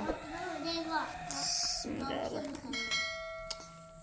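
An electronic bell chime, several steady ringing tones together, starts about three seconds in and fades over about a second and a half: the sound effect of a YouTube subscribe-button overlay. Before it there is a short high hiss, and a brief high voice near the start.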